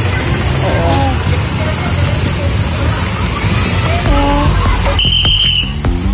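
Street traffic on a narrow road: the engines of passing vehicles run low under scattered voices. The engine rumble grows louder about four seconds in as a car passes close, and there is one short, high-pitched blast about five seconds in.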